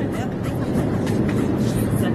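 Steady low rumble of an airliner cabin, with faint voices murmuring over it.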